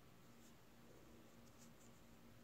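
Near silence: faint soft ticks and scratching of bamboo knitting needles and wool yarn as purl stitches are worked, over a faint steady hum.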